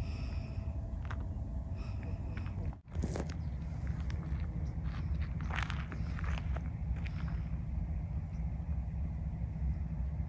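Steady low rumble of wind on the microphone, with a few faint high chirps; the sound cuts out briefly about three seconds in.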